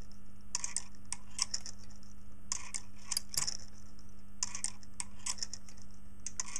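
Homemade Hipp-toggle pendulum clock movement ticking: a short cluster of light metallic clicks as the pendulum's toggle passes over the brass dog on the switch arm, three times, about every two seconds.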